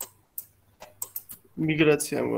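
Computer keyboard typing: a handful of separate key clicks, then a person starts speaking about three-quarters of the way in.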